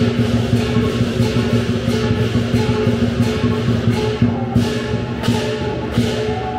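Lion dance percussion: drum, cymbals and gong playing a steady, driving rhythm, with the gong and cymbals ringing on between strikes.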